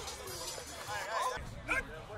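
Raised voices of several people calling out, indistinct, in short bursts, with a brief louder shout near the end.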